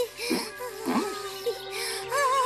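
Cartoon background music with a wavering melody and two quick swooping glides in pitch, one near the start and one about a second in.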